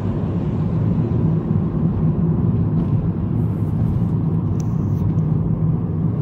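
Steady rumble of a car's engine and tyres heard from inside the cabin while driving at speed.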